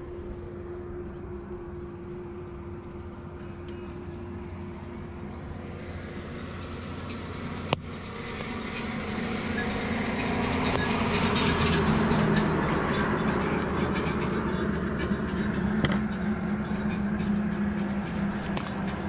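Road traffic: a steady engine hum, then a vehicle's engine and tyre noise that swells up from about eight seconds in and stays loud, with a single sharp click just before the swell.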